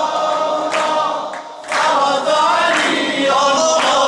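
Unaccompanied Shia devotional singing (maddahi): long, wavering sung lines, with a brief break about a second and a half in.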